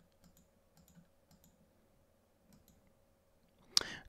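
A few faint computer mouse clicks, scattered and short, over a low room hush, with one sharper click just before the end.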